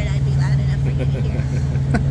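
Laughter and talk over a steady low mechanical hum that holds one pitch throughout.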